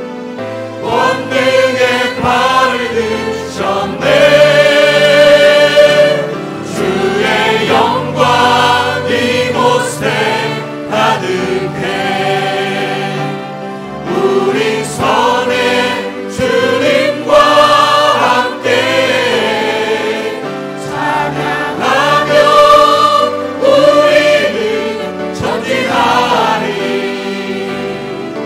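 Choir singing a Korean worship song with instrumental accompaniment.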